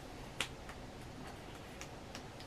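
A single sharp plastic click about half a second in, then a couple of faint ticks, from a plastic deodorant stick being handled; otherwise low room hiss.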